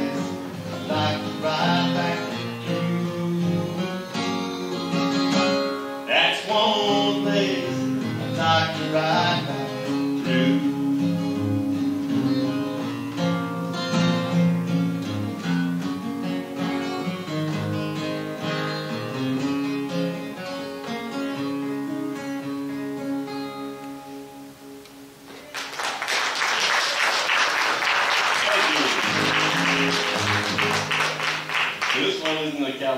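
Acoustic guitar picked and strummed to close a cowboy song, fading out about 25 seconds in. Then the audience applauds.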